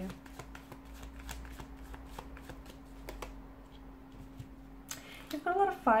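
Tarot cards being shuffled and handled by hand: a run of quick, light card clicks. A faint steady hum sits underneath.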